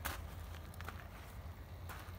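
Footsteps on gravel: a few light crunches about a second apart, over a low steady hum.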